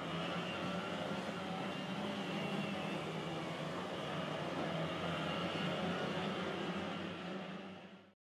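Steady low hum of boat-racing outboard engines running in the distance, with a hiss of water and course ambience over it, fading out near the end.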